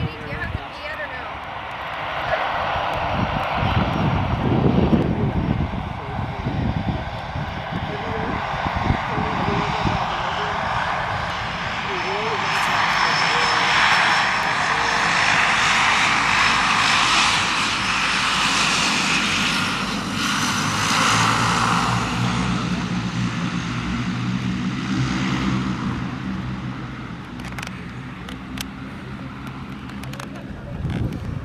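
A propeller airplane's engine passing overhead: the drone builds over several seconds, holds loudest through the middle and fades away near the end, with a steady low engine hum showing as it recedes.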